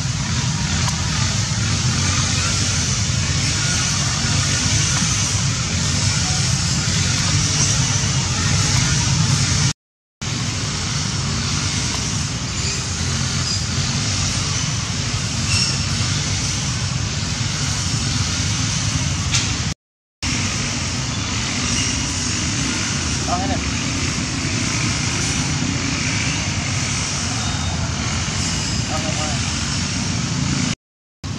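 Steady outdoor background noise, a low rumble with a high hiss, cut off briefly twice where the shots change.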